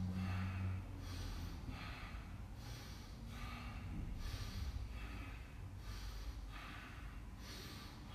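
A man breathing deeply in and out through the nose, with a breath sound roughly every second. This is slow cool-down breathing after a workout, meant to bring the heart rate down.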